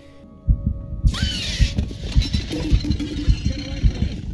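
Film score music: a low, heartbeat-like pulse, about two beats a second, starting about half a second in, with a brief high rising-then-falling swish about a second in.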